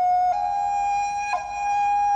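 Accompaniment music: a flute-like wind instrument holding long, steady notes. The note steps up slightly about a third of a second in and is briefly re-sounded near the middle.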